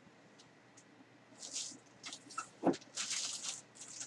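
Clear plastic bag crinkling as hands handle it, in two short spells about one and a half and three seconds in, with a light knock just before the second.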